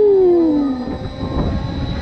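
Zamperla Air Race flat ride in motion, heard from on board: a steady low rumble of wind and ride noise, with a single long pitched tone sliding down in pitch during the first second.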